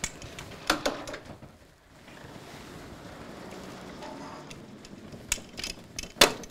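Lecture-hall sliding blackboard panels moved with a hooked metal pole. There are a couple of knocks about a second in, then a steady rumble as a panel slides in its frame for a few seconds, then sharp clacks near the end.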